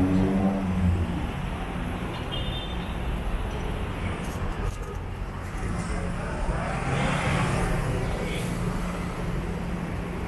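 Road traffic from the street below: a steady rumble of passing cars and trucks, with an engine hum near the start and a vehicle passing louder about seven seconds in.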